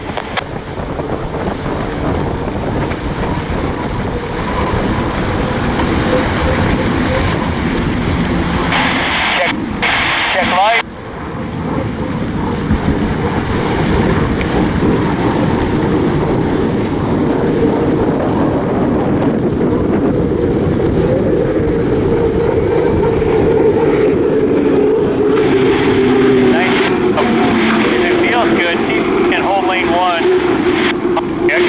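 U-5 Graham Trucking unlimited hydroplane's turbine engine running at speed on the water: a loud, steady rumble with a held pitched whine that slides slightly lower in the last third.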